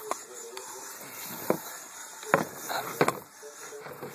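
Hand-crank apple peeler being turned slowly and unevenly, giving irregular sharp clicks and knocks from the crank and gear mechanism, about five in all.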